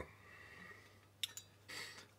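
Quiet room tone with two light clicks about a second and a quarter in and a faint breath near the end.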